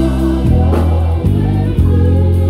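Vintage Music Man StingRay 5 five-string electric bass played through an amp: low notes, each held about half a second to a second before the next, along with gospel music with singing.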